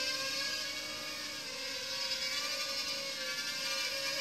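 Holy Stone HS170 Predator mini quadcopter's four small motors and propellers whining steadily as it flies.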